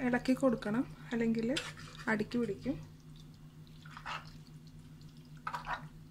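A voice speaking for the first half, then thick curry being stirred in a clay pot with a plastic spoon: two short stirring noises in the quieter second half, over a steady low hum.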